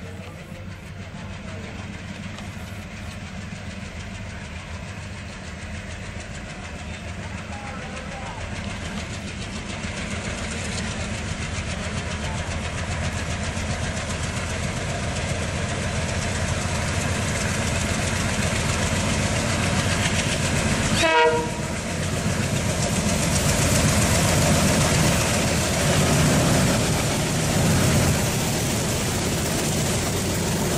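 Twin ALCO WDM-3D diesel locomotives chugging hard under power as an express train approaches, the deep engine beat growing steadily louder along with wheel and rail noise. A short horn note sounds about two-thirds of the way through.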